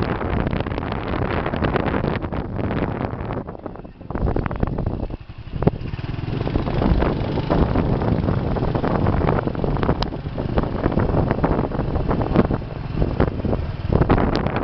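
Wind buffeting the microphone of a moving motorbike, mixed with the bike's riding noise. It eases off briefly about four and five seconds in.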